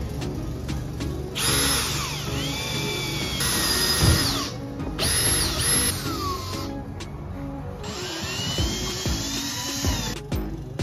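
Cordless drill running into a carpeted plywood bed platform in four runs of a few seconds each. Its whine drops in pitch as each run winds down.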